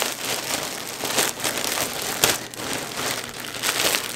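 Clear plastic poly bag crinkling and rustling as knit joggers are pulled out of it, with a few louder crackles along the way.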